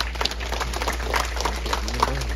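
Audience clapping: many irregular, overlapping claps over a steady low hum.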